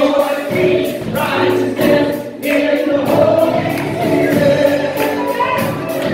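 Live worship song: a woman singing lead at an electric keyboard with guitar accompaniment, several voices singing together over a steady beat.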